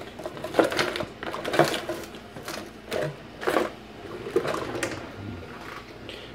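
Metal cutlery clinking and clattering as a spoon is fetched from among kitchen utensils: a string of irregular sharp clicks and knocks.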